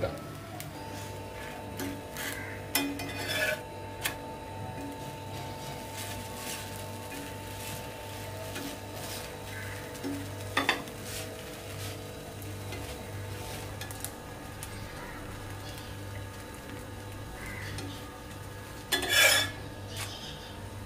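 Metal spatula scraping and clicking against a cast-iron pan as a flatbread cooks on it with a faint sizzle. There are a few light scrapes early on, a sharp click about ten seconds in as the bread is turned, and a louder scrape near the end.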